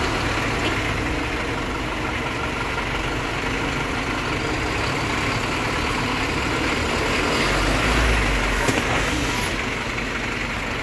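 Bus engine idling with a steady low rumble. The rumble swells louder for about a second near eight seconds in, and a single sharp click follows just after.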